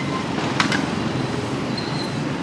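Street traffic noise: a steady rumble of passing road vehicles, with two sharp clicks just after half a second in.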